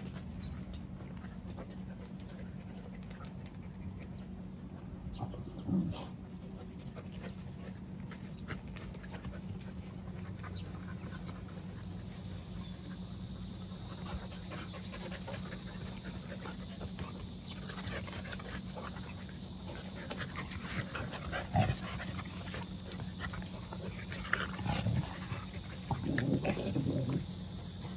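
Jindo dogs playing together: panting and scuffling, with a few short louder sounds from them now and then. A steady low hum runs underneath, and a steady high hiss comes in about halfway.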